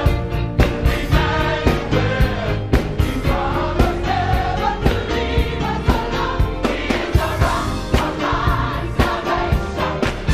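Black gospel choir singing in full voice over band accompaniment with a steady beat and strong bass.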